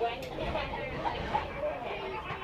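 Indistinct voices of people talking inside a slowly moving electric railway car, over the car's low running rumble.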